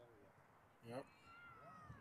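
Faint, high-pitched shouts from distant players or spectators on the field. A short call rises in pitch about a second in, then a longer call falls slowly in pitch.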